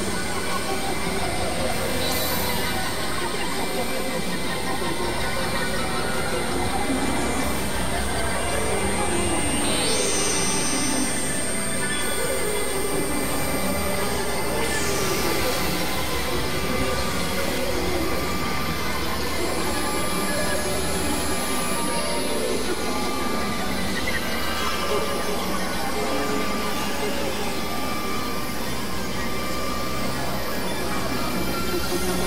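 Experimental electronic noise music: a dense, steady synthesizer drone of layered tones and noise, with a thin high whine running through it. A couple of swooping pitch glides cut through the upper register around ten and fifteen seconds in.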